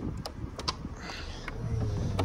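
Mercedes SL350 folding hardtop's hydraulic roof pump starting up with a steady low hum about one and a half seconds in, after a few faint clicks, as the button is held to raise the stowed roof in the boot.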